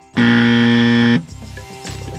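A 'wrong answer' buzzer sound effect: one low, harsh buzz held for about a second, marking a mistake.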